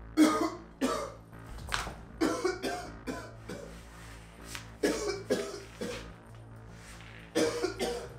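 A man coughing again and again in short, irregular fits, with hoarse retching between coughs. The coughing is put on, faking a sudden illness.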